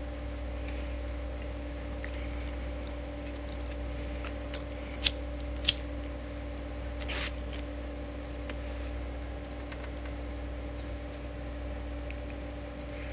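A steady low hum, like a machine running, with two sharp clicks a little over half a second apart about five seconds in and a brief scraping rustle about seven seconds in.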